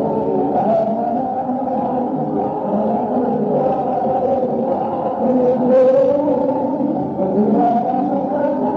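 Muffled, low-fidelity audience recording of a live concert: band music and crowd noise run together, with wavering held notes and a dull sound missing its high end.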